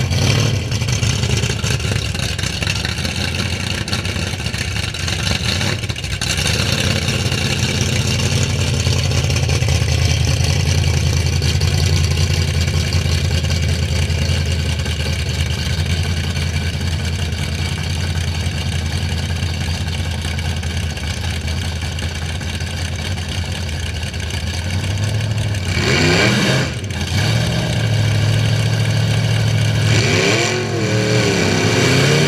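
Vintage pickup drag truck's engine idling loudly and steadily, then revved up and back down near the end.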